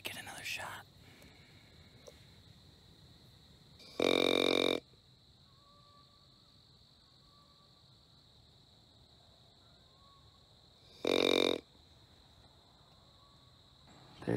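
Two loud grunts on a buck grunt call, a buzzy pitched blast about four seconds in and a shorter one about eleven seconds in, meant to draw deer in.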